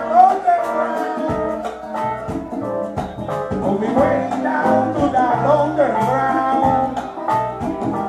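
A live salsa band playing, with hand-struck congas and keyboard, a trombone and bass, and a voice singing over the groove.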